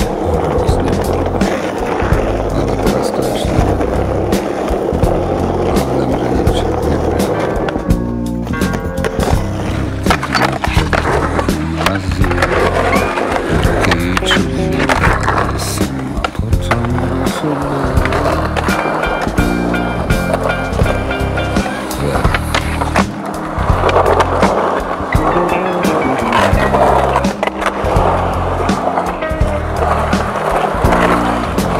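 Music track with a steady beat, laid over skateboard sounds: wheels rolling on concrete, and sharp clacks of the board's pops and landings.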